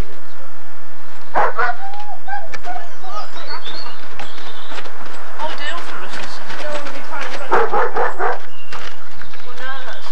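A dog barking now and then, with loud bursts about a second and a half in and again near eight seconds, among indistinct voices.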